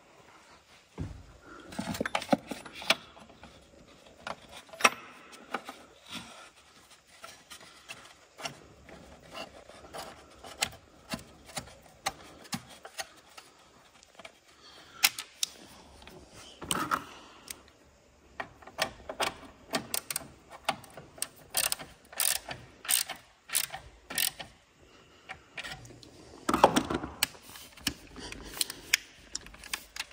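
Hand socket ratchet clicking in short, irregular runs as nuts on a car battery's fittings are tightened, with scattered knocks of tools against the battery and engine bay.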